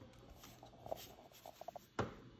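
Quiet room with faint handling noise: a few soft scrapes and small clicks, a cluster of them past the middle and a sharper click at the end.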